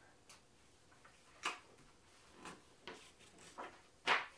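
Faint rustles and taps of a paperback picture book's pages being handled and turned, five short soft sounds spaced about a second apart.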